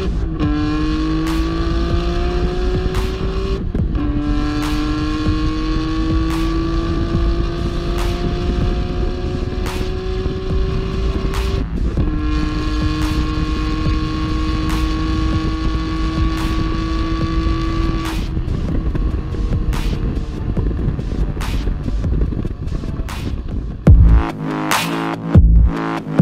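Nissan Skyline R34 GT-R's twin-turbo straight-six (RB26DETT) under hard acceleration at high revs, heard from inside the car: the pitch climbs and drops sharply at upshifts near the start, about four seconds in and about twelve seconds in. After the last shift it holds a steady high note for several seconds, then eases off toward the end.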